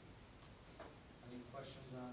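Quiet room tone with a couple of light clicks under a second in, then a voice speaking softly and indistinctly in the second half.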